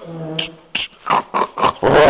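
A man making vocal sound effects into a microphone pressed against his chest: a low growl, then about five short, sharp hissing mouth sounds in quick succession, standing in for unseen work going on inside his heart.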